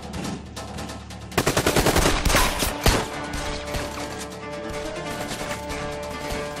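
A rapid volley of gunfire lasting about a second and a half, ending in a single sharp shot, over dramatic background music.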